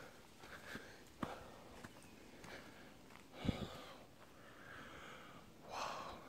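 Quiet scene with a person's sniffs and breaths close to the microphone. There are two soft knocks, one about a second in and a stronger one about halfway through.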